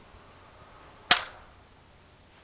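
Spring-powered Beretta 92 airsoft pistol firing a single shot about a second in: one sharp snap with a brief ring-out.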